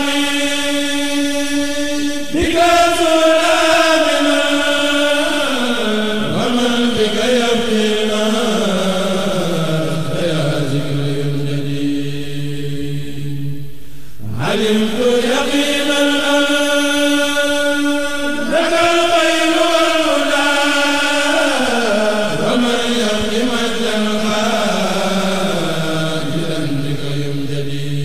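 A man's voice chanting Arabic religious verse, drawn out in long held notes that slide downward through each phrase. A new phrase starts about two seconds in and again about halfway through.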